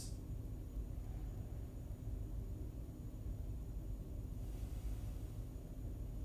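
Quiet room tone: a steady low rumble with no distinct sound.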